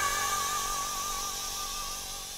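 Jazz big-band music: a sustained chord held by the ensemble, dying away steadily.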